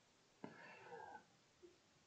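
Near silence: room tone, with one faint, short sound about half a second in.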